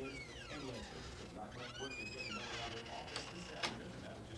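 A person's high voice gliding down in pitch, then short high wavering cries, followed by two sharp clicks a little after three seconds in.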